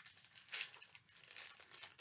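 Clear plastic packet of rhinestone embellishments crinkling as it is handled, in short, faint rustles, the strongest about half a second in.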